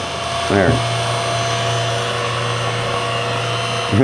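CNC-converted mini mill running: the spindle and stepper drives hum steadily as a quarter-inch carbide end mill cuts a pocket in a wooden block. The low part of the hum shifts slightly higher less than a second in.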